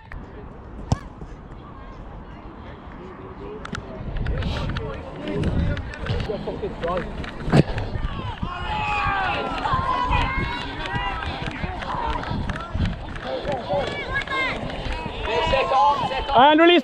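Outdoor rugby match heard from a referee's body-worn camera while he runs: wind rumble on the microphone and footfalls, with players shouting across the pitch, growing busier from about halfway through.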